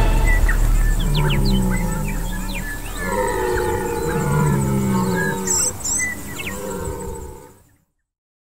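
Red stag roaring during the rut: two long, low, moaning bellows, the second longer, with small birds chirping in the background. The sound fades out near the end.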